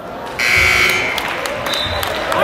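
A basketball gym's scoreboard horn sounds a loud, steady buzz that starts suddenly about half a second in and lasts about a second, over crowd murmur.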